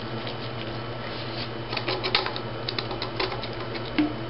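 Light, irregular clicks and taps of CPVC plastic pipe and fittings being handled and pushed together, busiest in the second half.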